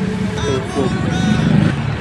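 City street traffic: cars and motorbikes running along the road in a steady rumble, with indistinct voices over it.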